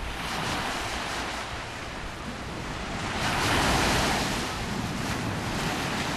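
Small sea waves washing up a sandy beach and over rocks at the water's edge, with a louder surge of surf about three to four seconds in.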